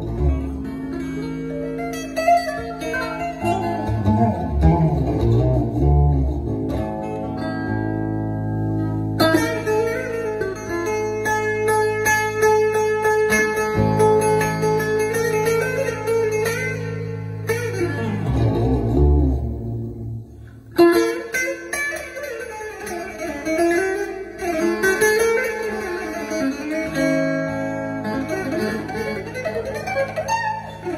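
Four-string bağlama, a long-necked Turkish lute, played solo: a plucked melody over steadily ringing lower strings, with a brief lull about twenty seconds in before the melody picks up again.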